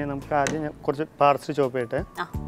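Speech only: a person talking in quick conversational phrases.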